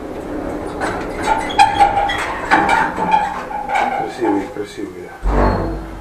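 An indistinct voice, partly on held, sung-like notes, then a low thump about five seconds in.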